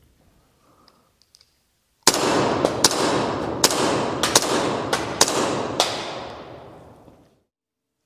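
A loud burst of crackling hiss with about a dozen sharp pops. It starts suddenly about two seconds in and fades away over the next five seconds.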